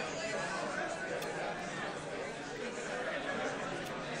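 Audience chatter in a hall: many people talking at once, a steady murmur of conversation with no single voice standing out.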